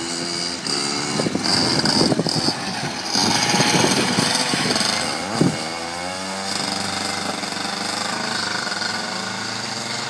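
Go-kart engine running as the kart drives by, louder about two to five seconds in, then a rise in pitch as it revs up and holds a steady run.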